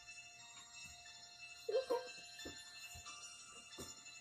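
Horror movie trailer soundtrack playing through computer speakers: steady, held, eerie tones, with a short vocal burst about two seconds in and a few sharp hits in the second half.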